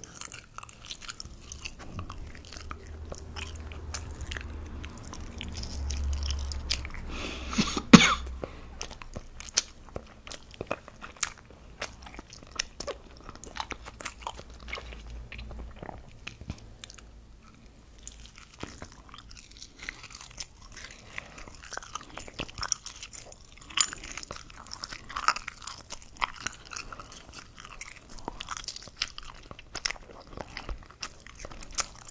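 Close-miked chewing of soft wurstel (small hot dog sausages), with many small wet mouth clicks and smacks. A single sharp, loud click about eight seconds in.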